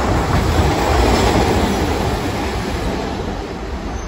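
A Hiroshima Electric Railway 1900-series streetcar, car no. 1901, running past close by on street track. It is loudest about a second in, then eases off as it moves away.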